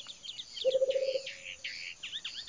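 Forest birds chirping and calling in quick short notes, with one lower held note lasting about half a second, over a steady high insect trill.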